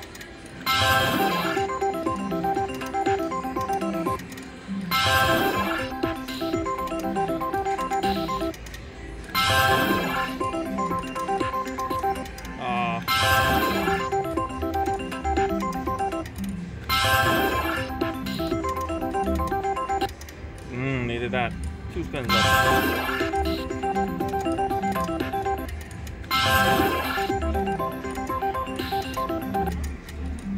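IGT Megabucks three-reel slot machine spun about seven times in a row, roughly every four seconds: each spin starts with a burst of sound and runs on in steady electronic tones while the reels turn and stop. None of the spins pays.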